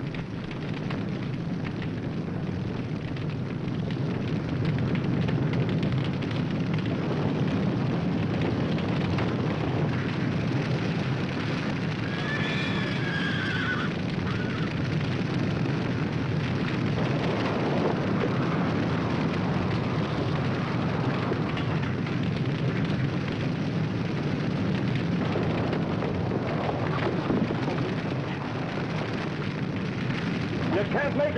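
Dense, steady noise of a burning forest, growing louder over the first few seconds. About twelve seconds in, a horse whinnies once.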